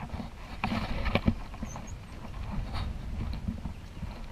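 Footsteps and knocks on wooden dock boards while stepping from a boat onto the dock, the sharpest knocks about a second in, over a low steady rumble.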